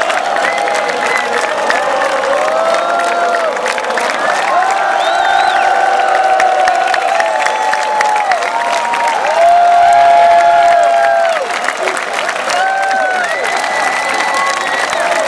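Large concert crowd cheering and applauding, with individual voices close by yelling long, arching cheers over the clapping. The cheering swells briefly about ten seconds in.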